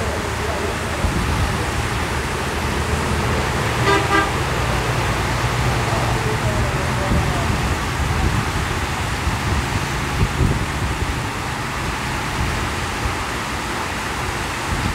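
Heavy rain pouring down steadily, with motor traffic running on the wet road underneath: motorcycles and a truck. A vehicle horn toots briefly about four seconds in.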